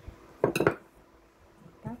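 A wooden spatula striking a stainless steel mixing bowl while stirring dry dough ingredients: a quick cluster of clinks about half a second in.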